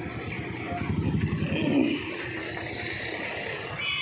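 Street traffic noise: a motor vehicle's engine running close by, swelling and loudest about a second and a half in.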